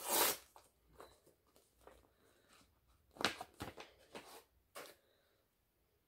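A sheet-mask sachet being torn open, a sharp tearing sound right at the start, then a few short crinkles from the packet and the sheet mask being handled about three to five seconds in.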